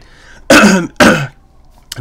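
A man who is sick with a cold coughs twice, about half a second apart.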